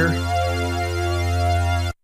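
Korg minilogue xd synthesizer lead patch holding one steady low note with many overtones, run through its chorus-type modulation effect. The note cuts off abruptly near the end.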